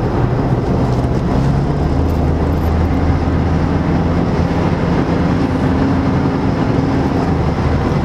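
Cabin noise of a Mercedes-Benz car at motorway speed, heard from inside: a steady low drone of road, tyre and engine noise.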